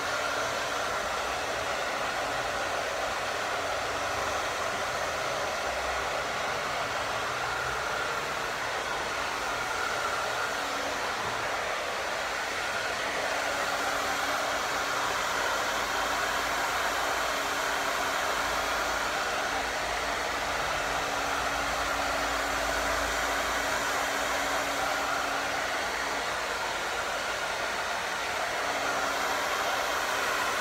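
Handheld hair dryer blowing continuously onto hair: a steady rush of air with a faint constant whine from its motor.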